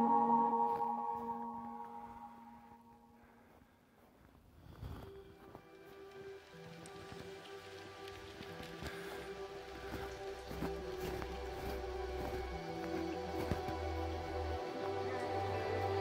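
Background music: one piece fades out over the first few seconds to near silence. A new piece then comes in about five seconds in, with low held bass notes, and grows gradually louder.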